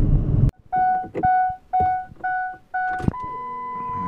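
Pickup truck's dashboard warning chime sounding with the ignition switched on before a cold start: five short beeps about half a second apart, then a clunk and a steady higher tone. Brief cab noise from driving at the very start cuts off suddenly.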